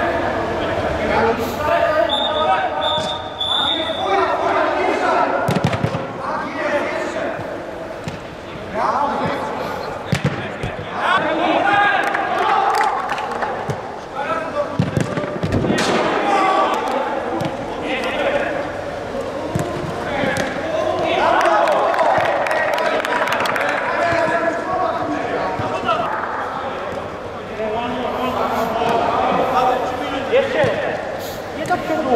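Players calling and shouting to each other during an indoor football game, with the sharp thuds of the ball being kicked, the strongest a shot on goal a little past halfway.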